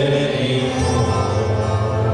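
Worship music with long held notes, voices and instruments sustaining the end of a sung phrase.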